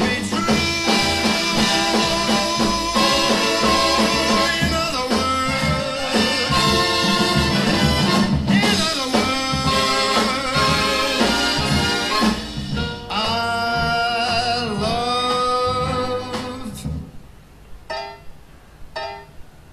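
A swing-jazz song with a singer and brass playing through a Tang Band W3-871 3-inch full-range driver in a tall Needle-style cabinet; the music stops near the end. On the wider-range passages the uploader hears the little driver choking up again.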